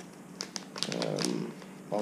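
A few light clicks and taps of small hard parts being handled on a table, with a brief soft murmur of a voice about a second in.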